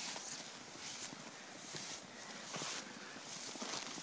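Several people's footsteps crunching through shallow snow, in uneven steps about once a second.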